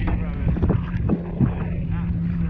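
Wind buffeting the microphone while a tandem kayak is paddled through choppy water, with irregular paddle splashes and slaps. A steady low hum runs underneath.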